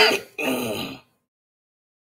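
A man clearing his throat in two quick parts within the first second.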